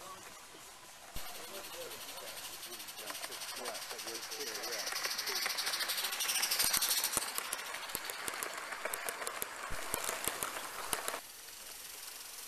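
Live-steam Gauge 1 model tank locomotive running toward and past, its steam hissing with rapid fine exhaust beats or rail clicks. The sound builds to its loudest about two-thirds of the way in and stops suddenly near the end.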